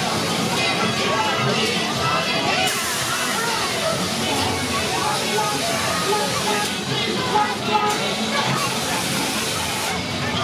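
Amusement-park ride scene with background music and a crowd's voices. A steady hiss starts about three seconds in, stops a few seconds later and comes back near the end.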